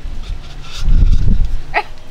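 A low rumble on the microphone, loudest about a second in, as a man shakes his head hard to throw off a bottle cap stuck to his forehead. Near the end comes a brief, high-pitched voice sound.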